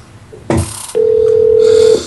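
Telephone line tone heard while a transferred call waits to be picked up: a short burst of line noise, then one steady tone held for about a second, typical of a ringback tone.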